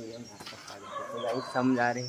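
A man's voice calling out, loudest near the end, with small birds chirping high in the background.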